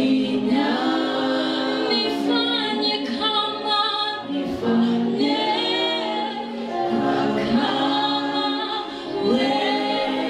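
A group of women singing a worship song together, with long held notes.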